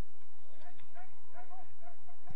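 A dog yapping several times in quick succession, short high yips over the steady outdoor rumble of the ground.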